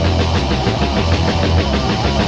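Death/doom metal from a 1988 demo tape: distorted electric guitar, bass and drums playing loud, with a fast, even pulse.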